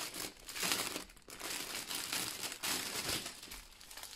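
Clear plastic wrap and small plastic bags of diamond-painting drills crinkling in irregular bursts as the wrap is pulled off the rolled bundle and the bundle is laid out. The crinkling is loudest in the first half and thins out near the end.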